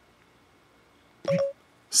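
iPhone Voice Control's short listening beep, a single steady tone about a second and a quarter in, signalling that the phone is ready for a spoken command; before it, near silence.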